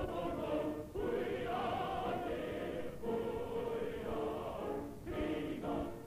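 Choir singing a Hungarian operetta number in short phrases, from an old recording whose sound is dull, with no high end.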